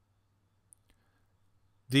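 Near silence: faint low hum of room tone, with one small sharp click about three-quarters of a second in and a fainter tick just after.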